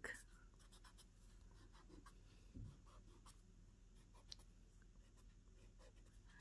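Faint pencil strokes on paper as a drawing is shaded, with a few light ticks of the pencil point.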